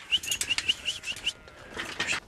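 A rapid run of short, high, rising whistled chirps, about seven a second, lasting just over a second before fading, with a single sharp click partway through.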